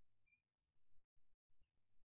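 Near silence: a very faint outdoor background that cuts out completely a few times.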